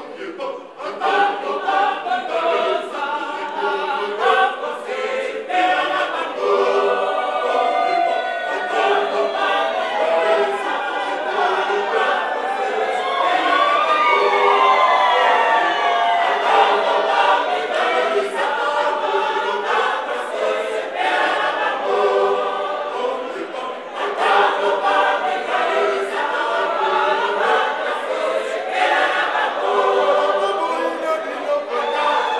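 A women's choir singing together in harmony. About halfway through, the voices slide up and down in pitch.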